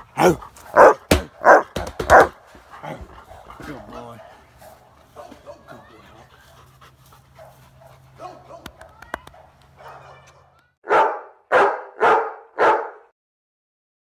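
Large pit bull barking: four loud barks about two-thirds of a second apart, then quieter whining and scattered sounds for several seconds, then four more loud barks near the end.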